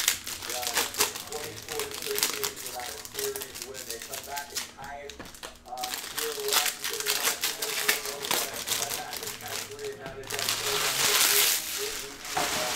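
Foil trading-card pack wrappers crinkling and tearing as packs are opened, with the light clicks of cards being handled. The crinkling is loudest and densest near the end.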